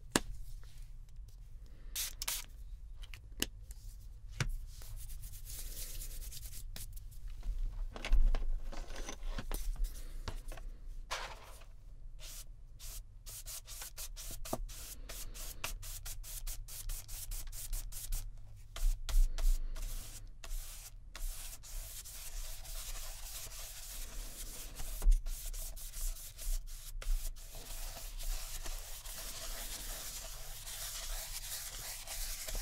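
A paintbrush rubbing across journal paper in repeated scratchy strokes as it spreads wet paint, the strokes coming closer together into near-continuous brushing in the second half. A few soft low bumps come in between.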